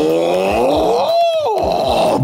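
A cartoon character's drawn-out "whoa", rising slowly in pitch, peaking a little past a second in, then dropping sharply. Beneath it, a low pulsing runs at about three to four beats a second.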